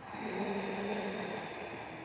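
A woman's long, audible breath in, following a Pilates breathing cue. It is steady, carries a faint hum, and slowly fades over about two seconds.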